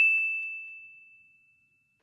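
A single high bell ding, struck just before and ringing out on one steady tone, fading away over about a second and a half.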